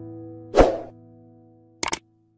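Background piano music with held chords fading out. About half a second in, a loud pop-up sound effect. Near the end, a quick double mouse-click sound effect from a subscribe-button animation.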